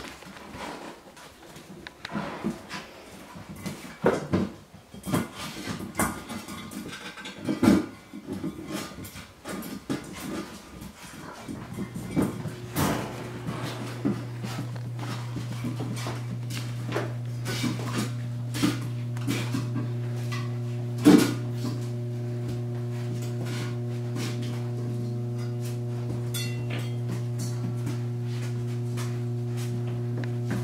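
Puppies playing, with scattered small knocks, scrabbles and squeaks against a tile floor and metal bowls. About twelve seconds in, steady held background music comes in and slowly grows louder.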